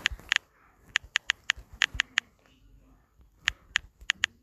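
Touchscreen keyboard on a smartphone making its key-press click sound as a message is typed. About a dozen short, sharp, identical clicks come at an uneven typing pace, with a pause of about a second past the middle.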